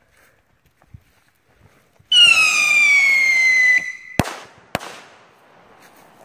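Whistling firework set off low to the ground: about two seconds in, a loud whistle falls steadily in pitch for under two seconds over a hiss, then two sharp bangs about half a second apart. It goes off without rising into the air.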